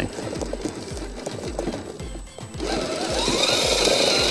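Background music with a steady beat, over the whir of an RGT Rescuer RC crawler's 20-turn 550 brushed motor and geartrain working slowly over rock. The whir grows louder about two-thirds of the way in.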